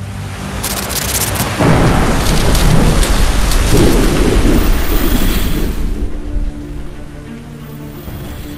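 Thunder-and-rain sound effect in a trailer soundtrack: a long, loud rumble that swells in about a second and a half in and dies away after about six and a half seconds, over a music bed.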